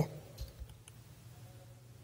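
A few faint computer clicks in the first second, made while a site is picked from a web page's drop-down list.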